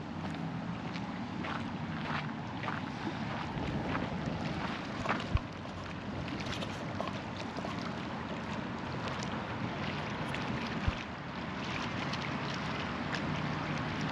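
Wind blowing on the microphone over a steady low hum, with scattered light clicks and two brief low thumps, about five and eleven seconds in.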